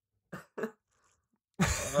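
A person laughing: two short breathy chuckles, then a loud burst of laughter about one and a half seconds in.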